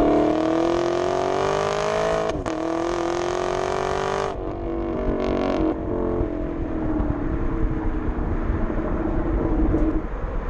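Chevrolet Camaro SS V8 through its NPP dual-mode exhaust in Track mode, pulling hard with its pitch rising and a brief break about two and a half seconds in before it climbs again. A little after four seconds the throttle closes and the exhaust drops to an uneven burble on the overrun.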